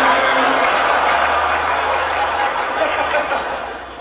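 Large theatre audience laughing, a dense wash of crowd laughter that fades away near the end.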